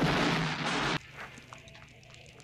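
Film explosion sound effect: a loud, dense blast of noise that cuts off abruptly about a second in, leaving only faint clicks.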